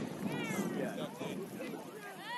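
High-pitched shouting voices calling out during a youth soccer match, with a long arching call about half a second in and shorter calls after it.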